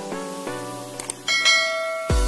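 Background music of short pitched notes, with a click about a second in and then a bright, ringing bell chime: the notification-bell sound effect of a subscribe-button animation.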